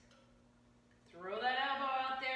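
Speech only: a quiet second of room tone, then a woman's voice calling out the next rep count, drawn out, its pitch rising at the start.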